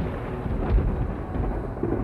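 Low, rolling rumble of thunder that swells and fades.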